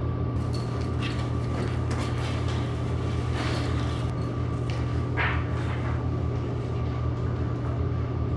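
Steady low room hum with scattered faint knocks and rustles as a backpack is picked up and slung over the shoulder, and a short scuffing rustle about five seconds in.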